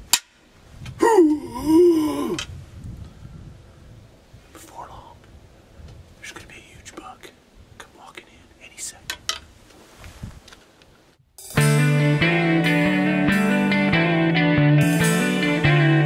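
A sharp knock, then a man's drawn-out vocal groan, gliding up and down, imitating a buck having the air knocked out of it in a fight. After several seconds of faint small sounds, music starts about eleven seconds in and carries on.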